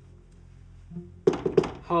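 Knuckles knocking on a closed interior panel door: a few sharp, quick knocks a little past halfway through.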